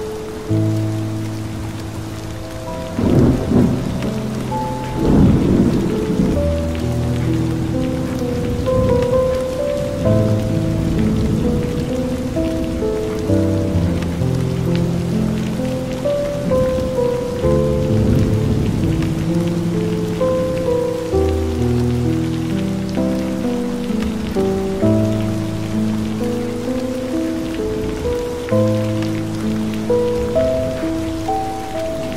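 Slow instrumental music of long held notes layered over steady rain, with two rolls of thunder about three and five seconds in.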